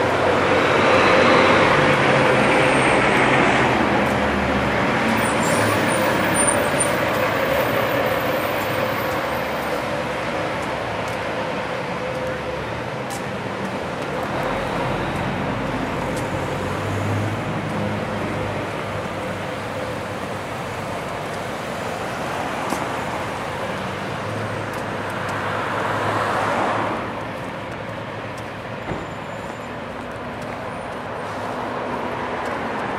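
City street traffic: cars driving past close by, the road noise swelling loudest in the first few seconds and again about 26 seconds in, over a steady background hum of traffic.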